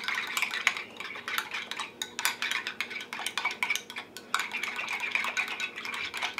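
A spoon stirring a mix of mayonnaise and plain yogurt in a small glass bowl, clinking and scraping against the sides in quick, irregular strokes.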